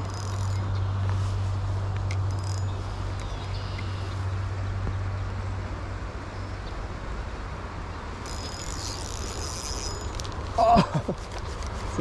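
Steady outdoor noise of a flowing river and light rain, with a low steady hum that fades after about five seconds. About eight seconds in there is a high buzz lasting about two seconds, and near the end a short, loud vocal exclamation.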